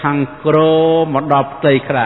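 A man's voice delivering a Khmer dharma sermon in a chanted, sing-song style, holding long syllables on a steady pitch between short breaks.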